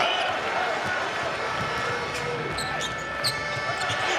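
Basketball arena game sound: a steady crowd hum, with a few short, sharp sounds of play on the hardwood court in the second half.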